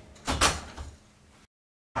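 Hotel room door being opened and closed, with a single thud about a third of a second in that dies away over the next second.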